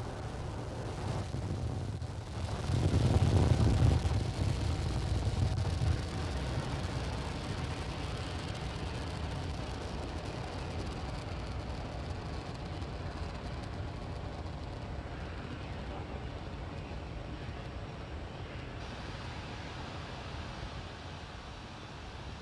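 Falcon 9 first stage's nine Merlin 1D engines in flight just after liftoff: a deep rumble that swells to its loudest a few seconds in, then a steady roar that slowly fades as the rocket climbs away.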